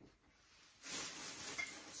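Near silence, then a steady hiss of rustling noise starts abruptly a little under a second in.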